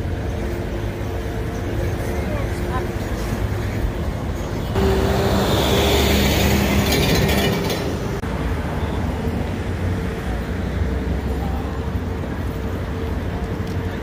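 City street traffic noise, with a louder vehicle passing about five seconds in for roughly three seconds.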